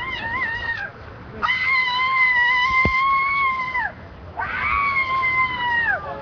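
A woman wailing in grief: three long, high-pitched, sustained cries, the middle one the longest.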